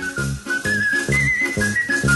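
Background music: a whistled tune stepping up and down over a steady, bouncy bass beat.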